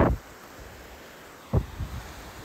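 Faint, steady hiss of shallow surf washing up a sandy beach. A voice is cut off at the very start, and a single short word comes about one and a half seconds in.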